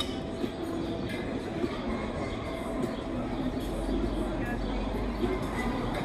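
Steady street rumble of passing traffic, with a deeper rumble building about halfway through, and voices in the background.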